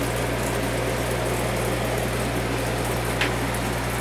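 Saltwater aquarium's filtration equipment running: a steady low electrical hum with an even hiss of moving water.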